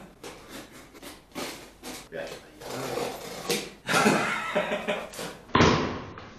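Cardboard shipping box opened by hand: packing tape pulled off in a series of short rips and crackles, then the box flaps pulled open with a louder rustle near the end.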